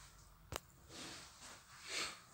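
A quiet room with one sharp click about half a second in, followed by two faint, soft rustling sounds.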